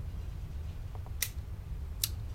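A single sharp click from the handgun's action about a second and a quarter in, after a couple of faint ticks, over a steady low hum.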